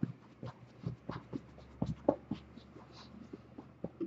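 Faint, scattered rustling and light scratchy clicks, several a second, of a hand moving against cloth.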